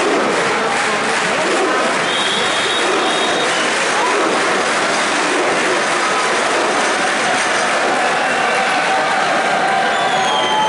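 Arena crowd noise: a large audience of wrestling spectators shouting and cheering in a steady, loud roar.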